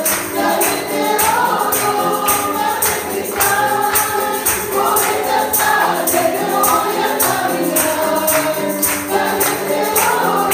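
Church congregation singing a Spanish-language worship song with musical accompaniment, a steady percussion beat marking the rhythm.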